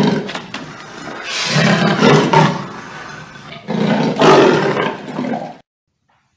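A big cat roaring: three rough calls, a short sharp one at the start, then two longer ones at about one and a half and four seconds in, cutting off suddenly shortly before the end.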